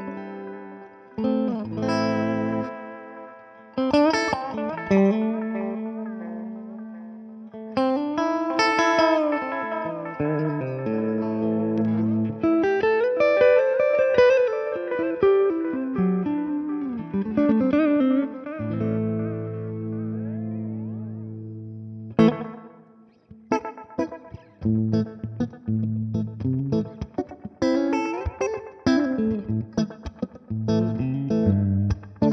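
Electric guitar played through a Brunetti Magnetic Memory tube-voiced delay pedal: held chords and a melodic lead line with bent notes, then, after a brief break about two-thirds of the way in, short, choppy picked notes.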